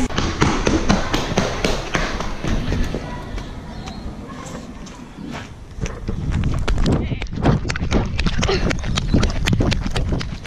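Knocks, rubbing and thuds from a handheld action camera being carried while walking, coming thick and irregular over the last few seconds.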